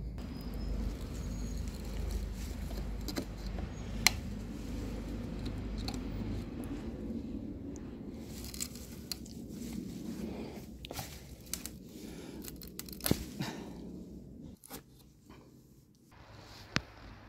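Pliers gripping and working rusty nails out of old weathered wooden boards: scraping and handling noise with a few sharp metallic clicks.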